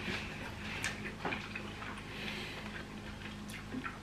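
Faint wet mouth clicks and smacks of people chewing sauce-coated prawns, with a few sharper clicks scattered through, over a steady low hum.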